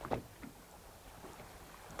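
Quiet ambience aboard a fishing boat at sea: a faint, steady low hum with a light haze of wind and water noise.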